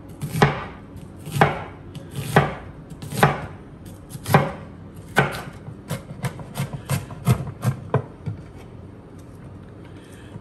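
Chef's knife chopping an onion on a wooden cutting board: firm strokes about once a second, then a run of quicker, lighter chops about six seconds in.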